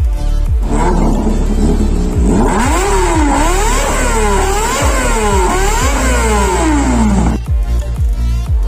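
Kawasaki ZX-25R's inline-four engine revved through an Arrow slip-on exhaust: about four throttle blips roughly a second apart, each rising and falling in pitch, then a long drop back down. The engine cuts in about a second in and cuts off near the end, with electronic music underneath.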